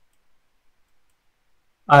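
Near silence with a few faint, isolated clicks, then a man's hesitant "uh" just before the end.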